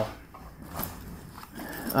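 Faint handling of a fabric backpack: soft rustling with a few light clicks from its metal zipper-pull clips.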